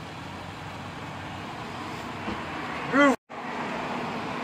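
Steady road-traffic noise, an even hum with no distinct events. About three seconds in comes a short vocal sound, and right after it the sound cuts out completely for a moment.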